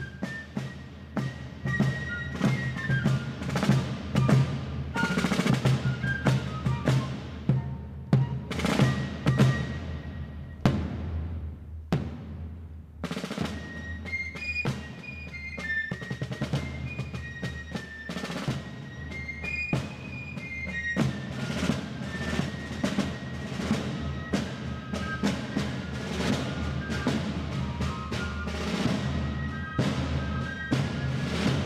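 A fife and drum corps playing a march: a shrill fife melody over rolling rope-tension snare drums and bass drum beats. The music breaks off briefly about twelve seconds in, then the fifes and drums start again.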